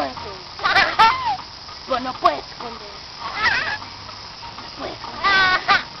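A toddler squealing with laughter in short, high-pitched squeals, four or five of them, the longest and highest near the end.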